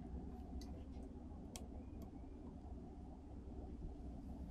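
Switches on an old dental unit's control panel clicking faintly as they are worked by hand: about three short clicks in the first two seconds, over a low steady rumble.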